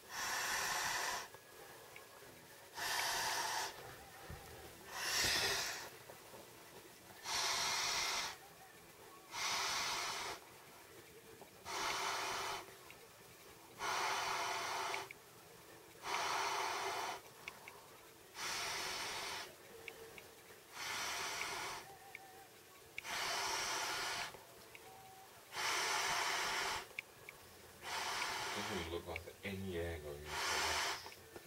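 Person blowing into an Intex air bed's valve by mouth: a long breathy blow of about a second, repeated roughly every two seconds with quiet gaps between.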